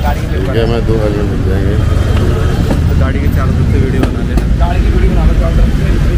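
Men's voices talking over a steady low rumble of street noise.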